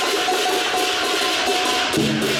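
Chinese lion dance percussion: cymbals clashing in a dense wash, with a ringing metallic tone held underneath and the big drum lighter than in the beats around it.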